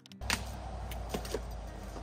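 Light clicks and taps of a vinyl corner trim being handled and pressed against the wall, four or so over about a second, over a low steady outdoor rumble.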